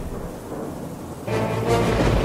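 Background music, then a deep rumble like rolling thunder that comes in suddenly about a second in and carries on under the music.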